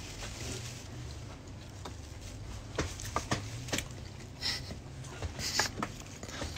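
Someone chewing a mouthful of hot dog with the mouth closed: a few soft, wet mouth clicks in the middle and short hissy sounds near the end, over a quiet room hum.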